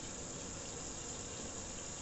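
Kitchen tap running steadily into a sink.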